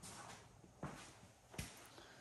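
Quiet room tone with two short, soft knocks, the first just under a second in and the second a little past the middle.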